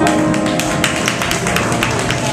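Live jazz trio of grand piano, upright double bass and drum kit playing, with frequent sharp drum and cymbal strikes over the held piano and bass notes.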